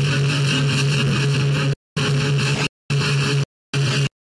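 Loud, steady distorted drone from a live metal band's amplified electric guitars, holding one low pitch. In the second half it cuts out abruptly to dead silence three times and comes back, as dropouts in the recording.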